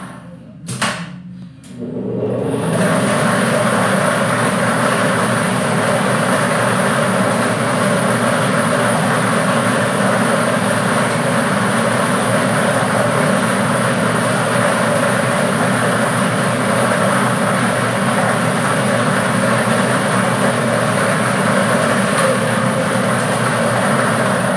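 Air-mix lottery ball machine switched on about two seconds in: its blower runs steadily while the plastic balls rattle around inside the clear acrylic drum.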